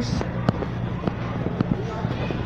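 Store background noise with a low steady hum, broken by several sharp clicks and knocks, one about half a second in and a few more later, like handling noise from a camera held at arm's length.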